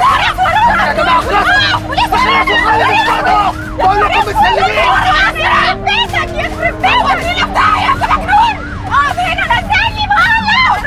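Several people shouting and screaming over one another in panic inside a moving car, with no clear words, over low sustained notes of a dramatic music score.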